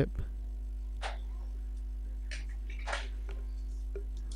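Faint handling of the plastic snap-on frame of a Kodak EasyShare D830 digital photo frame as it is pried off: two brief scrapes, about a second in and near three seconds, over a steady low electrical hum.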